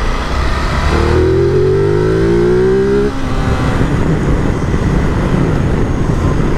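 Ducati Multistrada V2S's V-twin engine pulling hard under acceleration, its pitch rising steadily from about a second in and breaking off about three seconds in, over steady wind and road noise.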